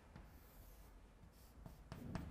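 Chalk drawing lines on a blackboard, very faint, with a light tick from the chalk about a moment in and two more near the end.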